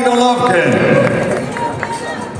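Men's voices calling out: one long, held call in about the first half second, then shorter shouts.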